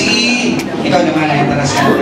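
Speech with music playing underneath, the voice amplified through a microphone and PA.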